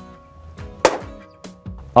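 A claw hammer strikes a luxury vinyl plank once, sharply, just under a second in, with a second, lighter knock about half a second later, over background music.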